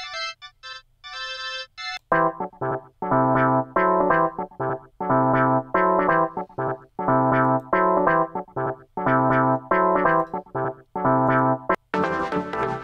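Software keyboard presets playing a looped chord pattern while they are auditioned one after another: a few sparse high notes at first, then from about two seconds in, short repeated chord stabs over a deep low note, the tone changing as presets such as a string organ and a clavinet are switched in.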